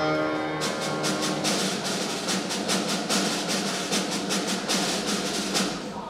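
A flute, grand piano and snare drum trio playing; about half a second in, the held flute and piano notes give way to a fast run of drum strokes that fills the rest.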